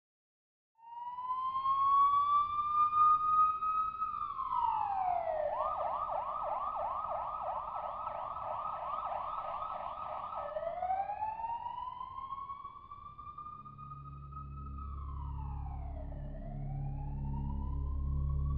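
Emergency vehicle siren: a long wail rising and falling, switching in the middle to a fast yelp of about four sweeps a second, then back to the slow wail. A low drone comes in under it near the end.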